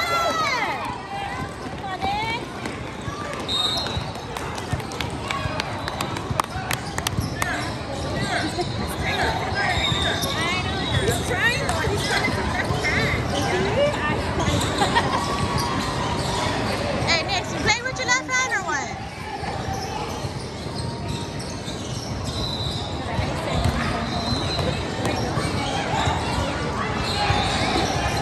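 Basketball bouncing on an indoor court during a youth game, with short high squeaks and indistinct voices and shouts from players and spectators.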